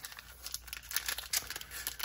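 Foil Pokémon booster pack wrapper crinkling in the hands and being torn open across the top, a run of irregular crackles.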